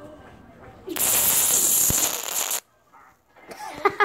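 Aerosol can of party string sprayed in one long burst of about a second and a half, a loud hiss that cuts off suddenly; the cold string lands on the phone.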